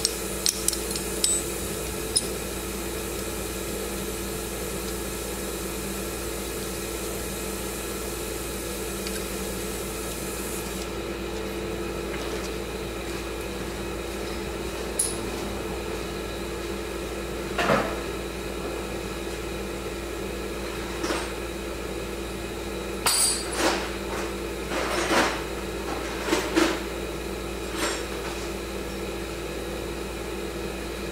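Occasional metal clinks and taps of hand tools and parts being handled: a single clink partway through, then a cluster of several clinks near the end, over a steady background hum.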